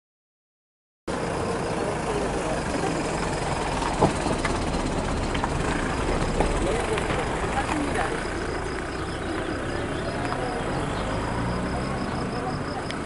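After a second of silence, outdoor road sound from the escort vehicles ahead of a cycling race: a car and a police motorcycle coming up the road, with indistinct voices close by and a sharp click about four seconds in.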